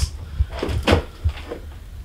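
A wrapped cardboard gift box being picked up off the doorstep and handled, giving a few short, light knocks.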